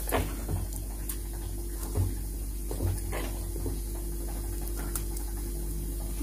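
Batter-coated potato kofta frying in hot oil in a steel kadhai: a faint sizzle with a few scattered light pops.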